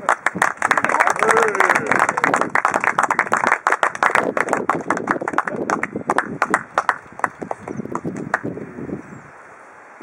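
A small crowd applauding, thick at first and thinning out until it dies away about nine seconds in.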